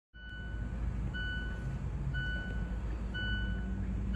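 Vehicle reversing alarm beeping about once a second, each beep a steady high tone just over half a second long, over a continuous low engine rumble.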